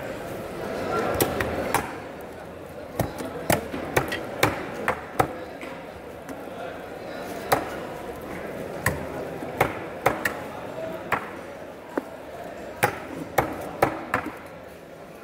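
Sharp, irregular knocks of a knife and fish striking a wooden chopping block as barracuda are cut up, about fifteen strikes over the stretch, with a hum of voices behind.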